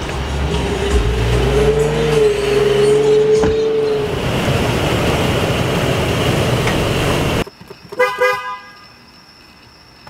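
A loud steady passage cuts off abruptly about seven seconds in. Then a car horn gives two short honks in quick succession.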